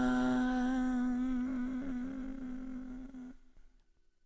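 End of a pop song: a male singer holds the final sung note with a slight waver over the fading accompaniment. It dies away to silence a little over three seconds in.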